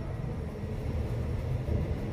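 Kone EcoDisc gearless traction elevator heard from inside the moving car: a steady low rumble as the car travels down between basement floors.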